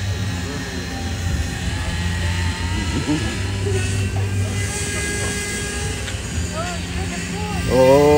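A steady low mechanical hum runs under the window, with faint distant voices. Just before the end, a voice exclaims loudly, "oh, oh".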